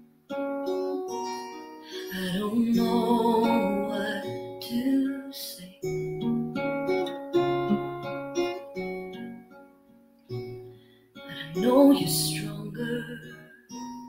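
Acoustic guitar playing a slow ballad accompaniment, its plucked notes ringing and overlapping. A woman's voice comes in with wordless singing in places, loudest near the end.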